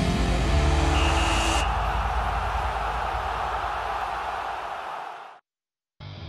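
A TV news transition sting: a short musical hit, then a long whooshing noise that slowly fades and cuts off suddenly about five seconds in.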